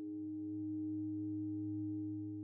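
A sustained low ringing drone of several steady tones held together, with a slight pulsing in one of them, swelling gently toward the middle.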